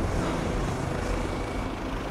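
Steady aircraft engine noise: an even rumble with a hiss over it, no separate beats or changes.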